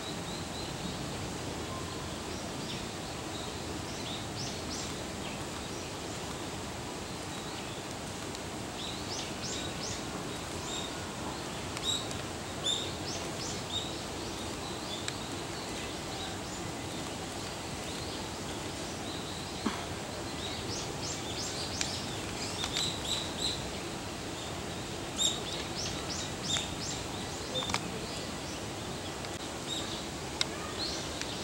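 Steady outdoor background noise with small birds chirping. Their short, high notes come in clusters, most of them a third of the way in and again in the last third.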